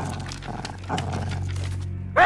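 A small animated creature making three short animal calls in the first second, over a low, steady music drone.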